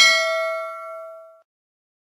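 Notification-bell 'ding' sound effect: one bright bell chime that rings out and fades away within about a second and a half.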